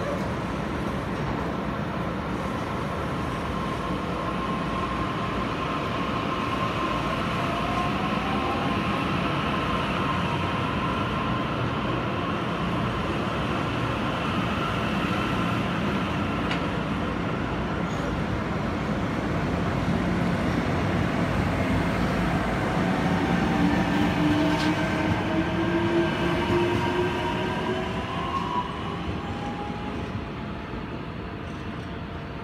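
Taiwan Railway electric multiple unit commuter train pulling out of the station. Its traction motors whine up in pitch as it gathers speed over the steady rumble of the wheels. The sound grows louder about three-quarters of the way through, then fades as the train leaves.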